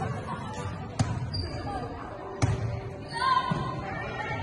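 Two sharp volleyball hits about a second and a half apart, ringing in a large sports hall, followed near the end by a player's voice calling out.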